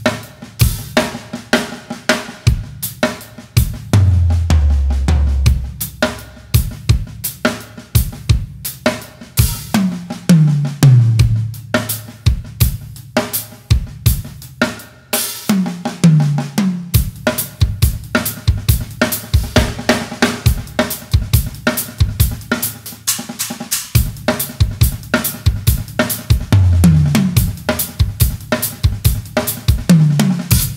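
Yamaha drum kit with Zildjian K cymbals playing a kherwa (keherwa) groove at a medium tempo: bass drum, snare, hi-hat and cymbals in a steady pattern. Several times it breaks into a fill whose run of tom strokes falls in pitch.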